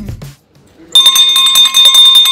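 Background music cuts off just after the start; about a second in, a small brass hand bell mounted on a board is rung rapidly, a fast run of strikes over a steady ringing tone, as a dinner bell calling that the food is ready.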